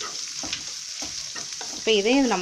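Chopped onions sizzling in hot oil in a nonstick pan, stirred with a wooden spatula, with a few soft scrapes of the spatula against the pan.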